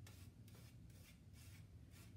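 Near silence: faint rubbing of a watercolor paintbrush stroking and dabbing on paper, over a low steady room hum.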